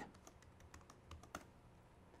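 Faint computer keyboard keystrokes: a handful of light, separate clicks over about a second and a half, the loudest a little after a second in.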